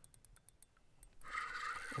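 Ice-fishing reel clicking rapidly as line is wound in on a hooked fish, then a steadier rushing sound from about a second in.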